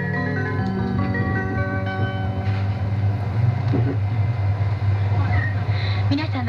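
Chime melody from the train's public-address system, with notes like a marimba, ending about two and a half seconds in. Under it is the steady low hum of a 200 series Shinkansen car running.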